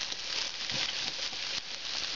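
Diced onion sizzling in hot oil in a nonstick frying pan, a steady hiss with small scattered clicks as a fork stirs it.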